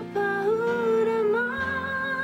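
A woman singing long held notes with a slight waver over steady low backing chords, the melody stepping up to a higher note about halfway through.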